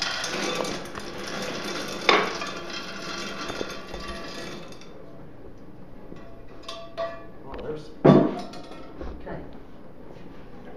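Spent jacketed bullets pour out of a pan and clatter into a steel lead-melting pot for about five seconds, charging it for melting. After that come scattered metallic clinks and one loud metal knock about eight seconds in.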